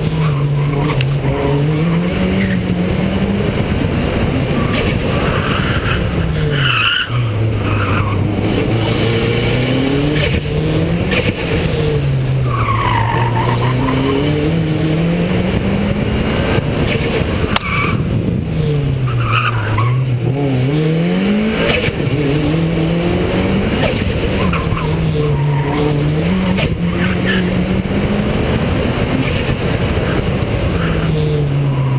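Toyota Celica GT-Four's turbocharged four-cylinder engine pulling the car along, its note climbing and dropping again over and over as it accelerates and eases off, picked up from a camera on the car's front wing.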